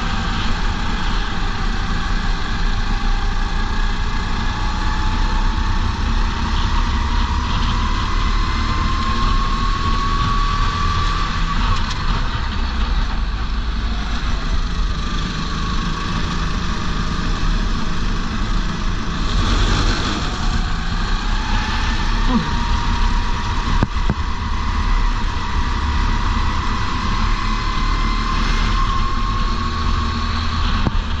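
Go-kart engine heard from the driver's helmet camera, running hard throughout. Its pitch climbs slowly under acceleration, falls away about twelve seconds in as the kart slows, then climbs again through the second half.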